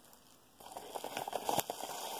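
Near silence for about half a second, then a quiet, dense crackling and rustling of loose packaging filler being handled, with a few sharper clicks.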